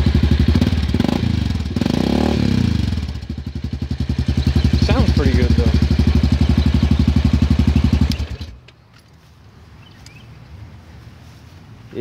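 Honda Rancher 420 ATV's single-cylinder engine idling through an aftermarket FMF exhaust, with a steady, deep, throaty pulse that is not really that loud. It is switched off about eight seconds in, and the sound cuts off suddenly.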